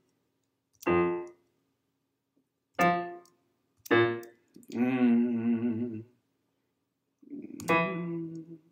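Electric piano sound from a keyboard: five short separate chords or notes, a second or two apart, the fourth held for about a second, as parts of the bass line and harmony are tried out.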